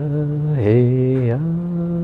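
A man chanting a blessing in long, drawn-out vocables ("hey, hey"), holding each note. His voice drops to a lower note about half a second in and rises back about a second later.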